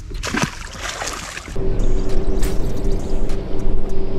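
A largemouth bass splashing into the water as it is released over the side of the boat. About a second and a half in, this gives way to a louder steady hum over a low rumble.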